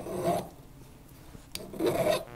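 Heavy flat file rasping across the sterling silver base of a bezel cup, cutting away the excess sheet: two strokes, one at the start and one near the end.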